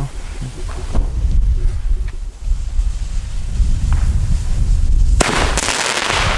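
A Lesli Mine Kingz firework mine fires with a sharp bang about five seconds in, followed by about a second of dense, fading noise as its stars burst.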